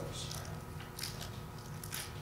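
Thin book pages rustling as they are turned: a few short, light, crackly rustles over a steady low hum.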